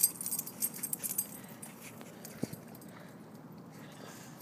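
A bull terrier puppy's paws and nose working in fresh snow: a quick run of short crisp crunches in the first second or so, and one more sharp crunch about two and a half seconds in.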